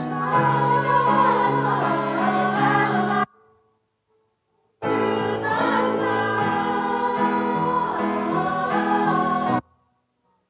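School choir singing, in two phrases; the sound cuts off abruptly about three seconds in, returns about a second and a half later, and cuts off abruptly again near the end.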